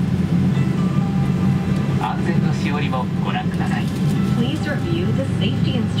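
Steady low hum of a Boeing 777-200ER cabin with the aircraft on the ground, heard under the spoken narration of the in-flight safety video.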